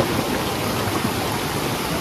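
Stream water rushing steadily over rocks, a fairly strong current.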